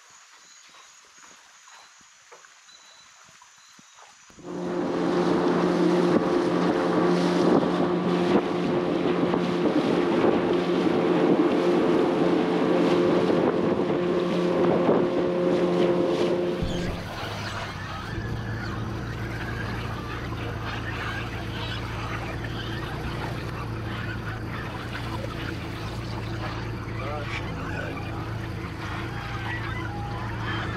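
After about four seconds of quiet, a boat's outboard motor runs steadily at speed for about twelve seconds. It then gives way to a flock of parrots calling and squawking without a break.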